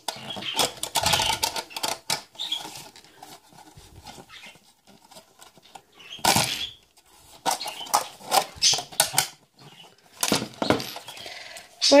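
Handling clatter of an AKAI car radio and its thin metal mounting strips: scattered clinks, clicks and knocks of metal and plastic on a wooden table. The loudest knock comes about six seconds in, with a quieter stretch before it.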